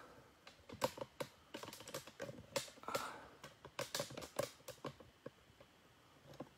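An irregular run of light clicks and taps, several a second, with a faint soft rustle about halfway through.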